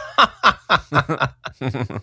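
A person chuckling in a run of short bursts, about four a second, reacting to a joke.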